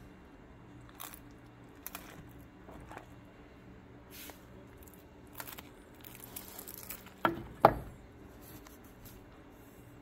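Fingers pulling the bone out of a slow-roasted pork butt in a metal roasting pan: soft wet squishing and tearing as the meat gives way, with scattered small clicks. Two sharp knocks come in quick succession a little past seven seconds in.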